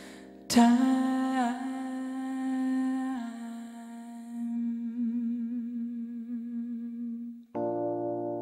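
A chord struck on a keyboard about half a second in, under a male voice holding one long wordless note with vibrato to the end of the song. Near the end a new sustained keyboard chord comes in suddenly.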